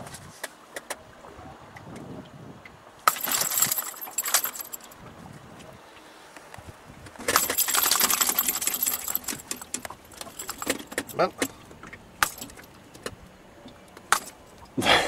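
A pike hanging from a hook scale thrashing and rattling the scale's metal hook and ring, in two bursts of jangling about three and seven seconds in, with scattered clicks between.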